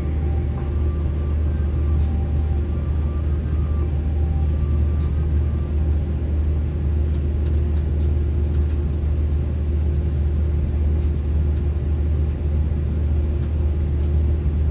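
Steady low drone of an Airbus A330's cabin, with a steady hum above it and an even level throughout.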